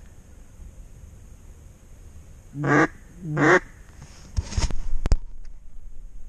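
Two loud, nasal mallard quacks blown on a handheld duck call, a second or so apart, to work ducks the hunter has just heard. They are followed by a few sharp knocks and rustles near the microphone.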